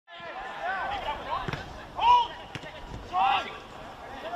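Footballers shouting short calls across the pitch, three times, the middle one loudest, with two sharp thuds of the ball being kicked in between.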